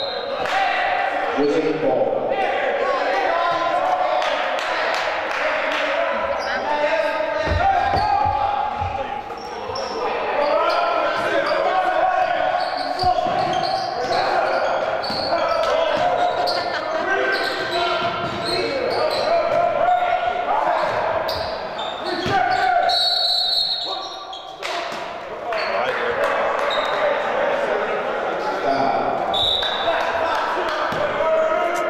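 Live basketball play on a hardwood gym floor: a ball dribbling and bouncing, sneakers squeaking, and players' voices calling out, all echoing in a large, mostly empty gym.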